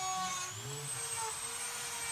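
Steady hum of a running motor, several held tones at once, with a faint high whine that rises slightly early on and then holds.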